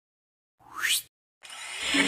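A quick cartoon-style sound effect: a pitched tone sweeping sharply upward and cutting off suddenly, followed after a short gap by a rising hiss that swells into the start of a logo jingle's music near the end.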